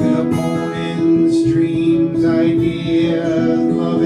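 Acoustic guitar strummed steadily under a man singing in long held notes.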